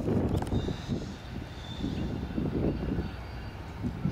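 Wind buffeting the microphone in uneven low gusts, over the low rumble of a slow-moving train in the distance.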